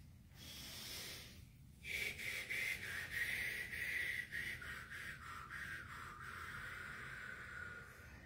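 A person breathing deeply: a short breath, then a long drawn-out breath of about six seconds whose hiss slowly falls in pitch.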